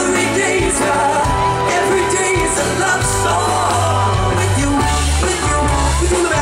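Live pop-rock band playing, with a male lead singer singing over electric bass, drums and guitar.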